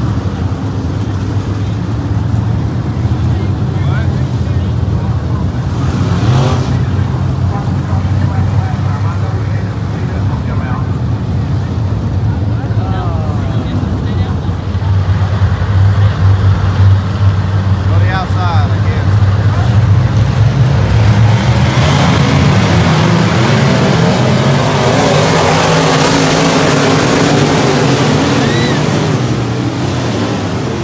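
A field of dirt-track modified race cars with V8 engines running at low speed. The engines build louder as the pack speeds up past, strongest in the last several seconds.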